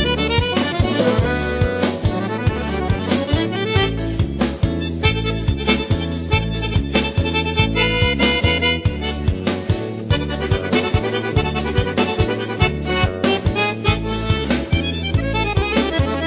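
Instrumental break in a gaúcho regional song: an accordion carrying the melody over a bass line and a steady, regular drum beat.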